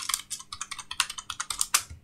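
Typing on a computer keyboard: a quick, irregular run of key clicks that stops near the end.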